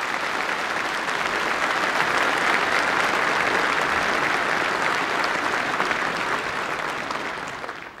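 A large hall audience applauding steadily, the clapping dying away near the end.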